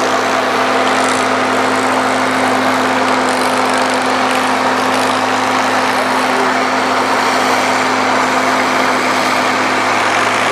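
Allis-Chalmers 220 tractor's six-cylinder diesel engine running hard under full load while dragging a weight-transfer pulling sled, its note held steady throughout.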